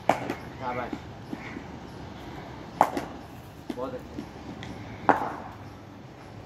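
Cricket ball striking a willow cricket bat three times, sharp wooden knocks about two and a half seconds apart: back-foot defensive blocks against throwdowns.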